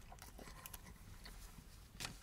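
Near silence: quiet car-cabin room tone with a few faint small clicks.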